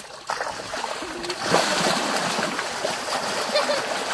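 Wet mud and water sloshing and splashing as white rhinos move about in a mud wallow, getting louder about one and a half seconds in.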